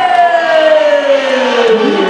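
A long drawn-out voice held on one sound, sliding slowly down in pitch, over crowd noise.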